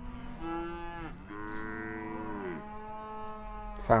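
Dairy cows mooing: several long, overlapping moos, some falling in pitch at their ends.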